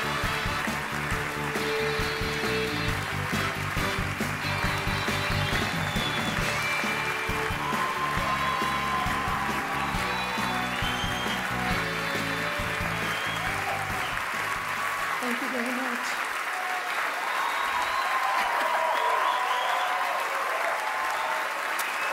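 Music plays over loud applause from a standing audience. The music's bass drops out about two-thirds of the way through, and the clapping carries on mixed with voices calling out.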